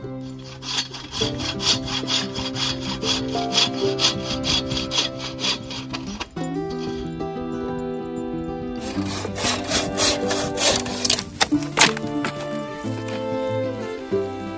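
Large folding pruning saw (Silky Katanaboy 650) cutting through dry driftwood by hand, with rapid, evenly spaced strokes for several seconds. After a pause of about three seconds comes a second, harder run of strokes, the loudest part. Background music plays throughout.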